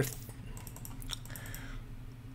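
Computer keyboard being typed on: a quick run of keystrokes in the first second and a half, as letters are entered into an online crossword grid.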